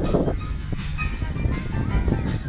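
Live piano-band music playing, steady and fairly loud, with a heavy low rumble underneath.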